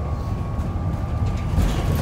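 Inside a moving Alexander Dennis Enviro400 MMC bus: a steady low rumble of engine and road noise, with a faint thin whine held steady above it.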